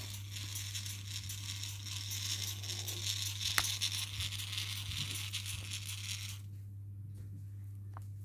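Plastic Strandbeest kit walking, driven by a small solar-powered geared motor: a busy clicking rattle of plastic legs and joints on a wooden floor. The rattle stops about six seconds in, leaving a steady low hum.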